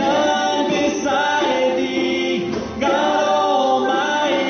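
Live worship music: a woman singing long held notes into a microphone, with other voices, over strummed acoustic guitars and a djembe. The sung phrases break briefly about a second in and again near three seconds in.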